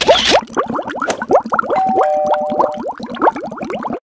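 Cartoon bubbling sound effect: a rapid stream of short rising bloops, several a second. It opens with a brief hiss, and a held electronic tone sounds near the middle.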